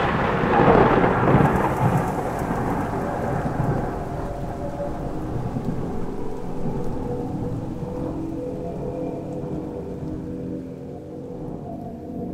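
Thunderstorm: a thunderclap's rumble rolling away over steady rain, the whole storm slowly fading down.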